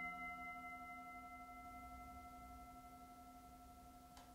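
A struck cymbal ringing out, a few steady bell-like tones slowly fading away.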